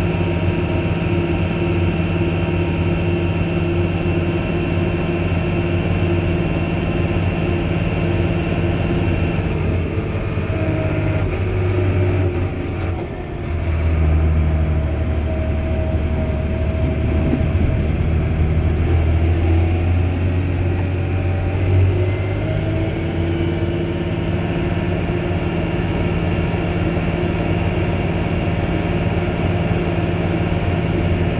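Farm tractor engine running steadily under way, heard from the cab. About halfway it eases off briefly, then pulls harder with a deeper, louder note for several seconds before settling back to its steady running.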